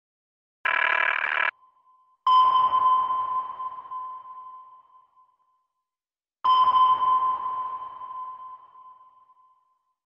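Logo sound effect: a short electronic burst, then two sonar pings about four seconds apart, each a clear ringing tone that fades away over about three seconds.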